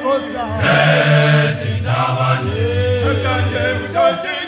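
Male a cappella choir singing in the Zulu isicathamiya style: deep bass voices hold long low notes beneath higher voices that glide up and back down.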